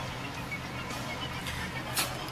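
Low, steady hum inside a car's cabin while it sits stopped in traffic with the engine idling.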